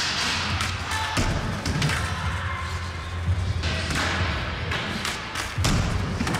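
Skateboard rolling over wooden ramps, a steady low rumble broken by several thuds of the board hitting the wood, the loudest just before the end.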